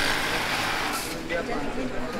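Busy market street noise: a steady din with indistinct background voices.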